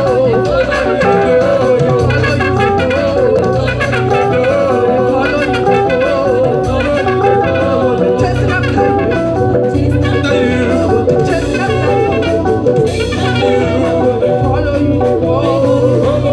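Live band music: electric guitar, electric bass and Yamaha keyboards playing together over a steady bass line, with a voice singing.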